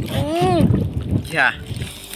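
A man's voice calling out over wind noise on the microphone: a long call that rises and then falls in pitch, then a short, higher word.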